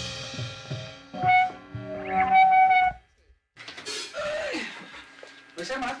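Sustained electric guitar notes ringing out at the end of a rock song, a few steady pitches held for a couple of seconds, then cut off suddenly about halfway through. After a short gap a person's voice starts talking.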